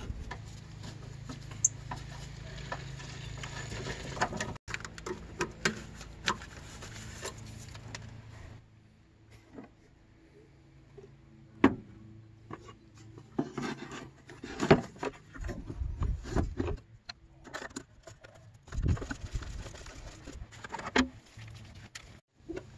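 Knocks, clicks and rubbing of a hard plastic air filter housing being handled and fitted back into an engine bay by gloved hands. A low steady background sound runs under the first eight seconds or so, then drops away.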